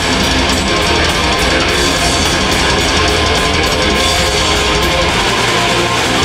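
Heavy metal band playing live: distorted electric guitars, bass guitar and drum kit at full volume over a fast, steady drum beat, heard from the audience.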